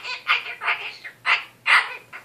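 Goffin's cockatoo babbling a string of raspy, speech-like squawks, about five short bursts in two seconds.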